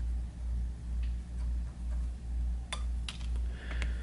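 A low hum that swells and fades almost twice a second throughout, with a few faint clicks in the last second and a half as lead-free wire is handled on a fly hook.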